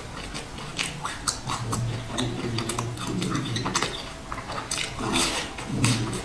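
Close-miked chewing of a chocolate sandwich cake with a seed-coated rim, with many short mouth clicks and smacks. A fresh bite comes near the end.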